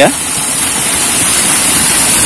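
Water gushing steadily from a pipe outlet and running down a small earthen ditch, a loud, even rushing.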